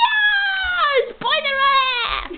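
A child's high-pitched, drawn-out wailing voice: two long calls, each falling in pitch, the second starting just past halfway, in the manner of a playful animal-like howl.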